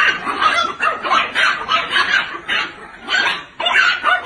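An animal calling over and over in short calls, about three a second.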